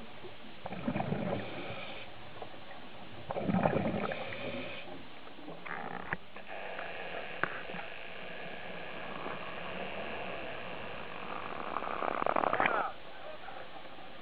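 Scuba diver breathing through a regulator underwater: two bursts of exhaled bubbles, about two and a half seconds apart. Later, a steady wind-and-water hiss at the surface, with a louder rush shortly before the end.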